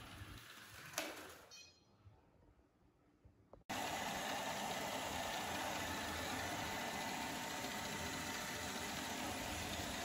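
ILIFE V5s Pro robot vacuum running with a steady whir from its suction motor and brushes, starting abruptly a little over a third of the way in after a near-silent gap. Before the gap there is a faint fading sound with a single click.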